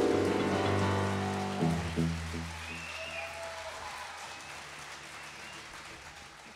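A live band's final chord ringing out and fading, with two last struck notes about a second and a half and two seconds in, over audience applause.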